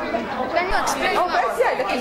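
Speech only: voices chattering, with no other sound standing out.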